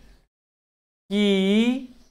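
A man speaking: his words break off, there is under a second of dead silence, and then he resumes with one long drawn-out syllable.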